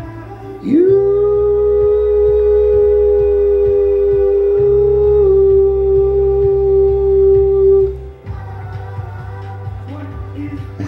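Music playing in the room, over which a voice holds one long sung note for about seven seconds: it slides up at the start, then stays level and stops sharply near the end, leaving the music on its own.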